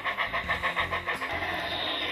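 Bachmann large-scale Thomas the Tank Engine's built-in sound module playing a steam chuff, about six chuffs a second, with music underneath. Past the middle the chuffing gives way to a steady hiss.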